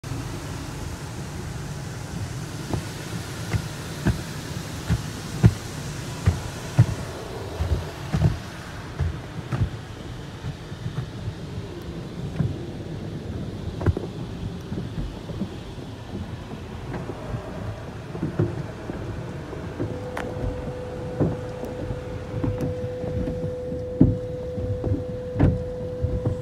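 Automatic car wash heard from inside the car: water spray hissing and drumming on the body and glass for the first several seconds, then the wash brushes slapping and thumping against the car in many irregular knocks. A steady hum joins about twenty seconds in.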